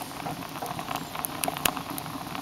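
Wood fire crackling in the feed tube of a sheet-metal rocket stove: irregular sharp pops over a steady hiss.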